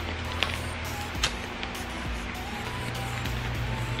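A few crackles and tears of a sheet-mask sachet being opened by hand, over background music.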